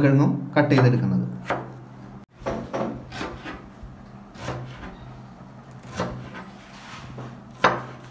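Kitchen knife chopping on a plastic cutting board: scattered sharp knocks of the blade against the board, a second or so apart, with one louder knock near the end.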